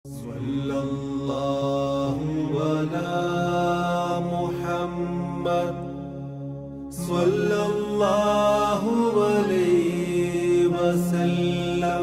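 A single voice chanting in long held notes with slow, gliding pitch, pausing for breath about six seconds in before the next phrase.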